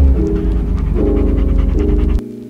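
A dog panting with its head out of a moving car's window, with a heavy rumble of wind on the microphone, under background music of sustained chords that change in steps.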